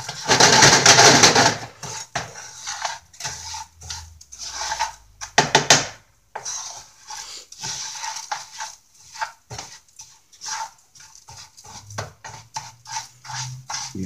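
Wooden spatula stirring and scraping raw rice around a nonstick frying pan as it toasts in a little oil, a run of short scraping and rattling strokes, most vigorous in the first couple of seconds and again about halfway through.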